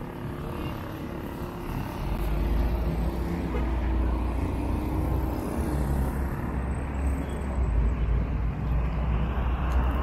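City street traffic: cars driving past, a steady rumble that grows louder about two seconds in.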